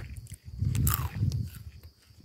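Wind buffeting the phone's microphone: a low rumble that swells and fades, with a few faint ticks.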